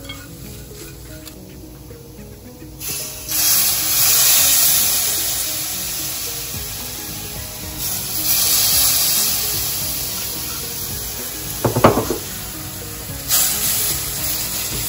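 Spiced masala frying in a pot, sizzling in loud surges from about three seconds in as spoonfuls of Garcinia cambogia (kudampuli) juice hit the hot pan and are stirred in, over background music. A single sharp knock near the end.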